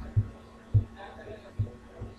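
Three dull, low thumps, irregularly spaced, over a steady faint electrical hum.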